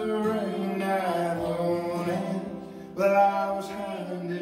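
Live acoustic folk song: male and female voices singing over a strummed acoustic guitar and a mandolin. The music dips and then comes in louder about three seconds in.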